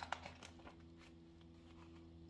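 Near silence with a faint steady room hum, and a few soft paper rustles in the first half second as a picture-book page is turned.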